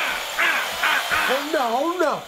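A person's wordless, wavering cries, the pitch sliding up and down, with ragged rasping breaths between them.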